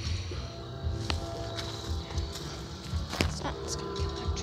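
Railroad grade-crossing warning bells ringing steadily while the crossing gates are down: a continuous ring made of several pitches held together.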